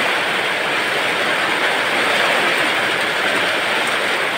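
Heavy typhoon rain pouring down, an even, loud hiss.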